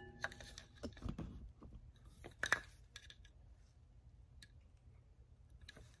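Faint handling noise from the two bamboo sections of an old shakuhachi being turned over in the hands: a few scattered light clicks and knocks, the clearest right at the start and again a couple of seconds in.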